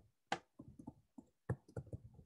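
A stylus tapping and scratching on a tablet screen during handwriting: a quick, faint run of small taps, with two sharper knocks about a third of a second in and halfway through.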